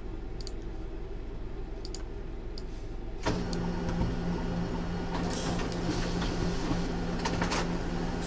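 A few sharp computer mouse clicks, then about three seconds in a steady mechanical hum with a low tone starts and keeps going.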